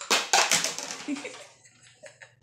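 A long cat toy scraping and rustling as a cat drags it across the floor and down a step: a quick run of scrapes and clatters for about a second and a half, then it stops.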